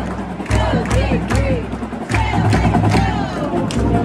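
Marching band drumline beating a steady cadence of heavy bass-drum strokes about twice a second with sharp snare and cymbal hits, while band members shout and chant over it. Held brass notes come in about halfway through.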